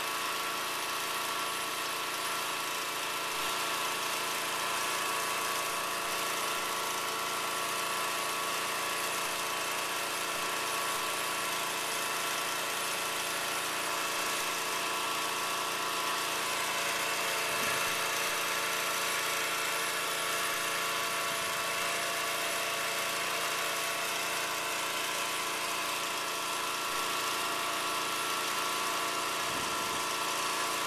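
An engine running steadily, its hum holding one unchanging pitch.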